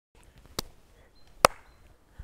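Two sharp hand claps, a little under a second apart, the second louder, the start of an evenly spaced run of claps.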